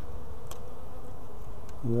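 Honey bees buzzing steadily around an open frame of comb, with two faint clicks.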